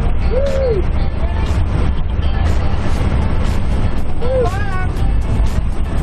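Loud, steady drone of a small jump plane's engine and propeller heard inside the cabin in flight. Two short rising-and-falling voice calls cut through it, one near the start and one about four seconds in.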